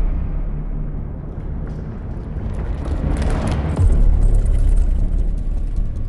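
Movie-trailer earthquake sound design: a deep, continuous low rumble that swells with a rising rush about three seconds in and lands on a heavy low boom just before four seconds, staying loud afterwards.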